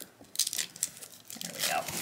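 A plastic wrapper crinkling and tearing in the hands as it is worked open, a stiff package that resists opening, with scattered crackles and a couple of sharper rips about half a second in and near the end.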